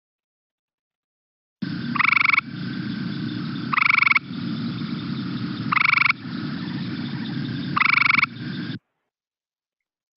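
Gray treefrog (Hyla versicolor) calling: four short, musical trills about two seconds apart, over a steady low background hum.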